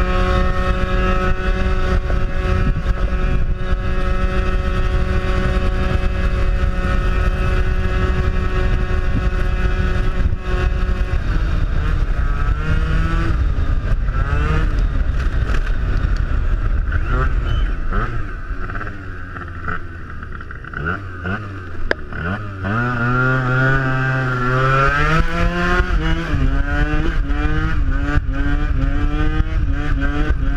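Yamaha Aerox scooter's two-stroke engine, fitted with a Malossi MHR 70cc kit, held at high steady revs for about the first ten seconds, then revving up and down. The revs drop off for a few seconds near the middle, then rise and fall again and again toward the end as the scooter is lifted into a wheelie. Low wind rush on the microphone throughout.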